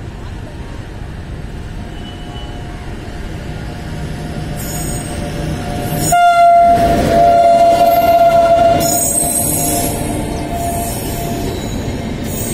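WAP-7 electric locomotive and passenger express coaches running past at speed, the rail noise growing louder as the locomotive comes alongside. About six seconds in, a steady horn blast sounds for roughly three seconds and then fades. Short high-pitched wheel squeals are heard as the coaches go by.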